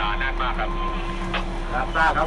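Voices talking inside a train driver's cab over the steady running hum of the train.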